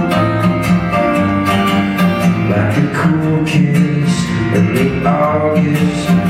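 Acoustic guitar played steadily in a live solo folk song, with a voice singing at times.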